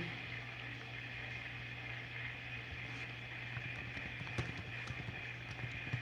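Quiet steady low hum and hiss, with a few light, irregular clicks or taps starting a little past halfway through.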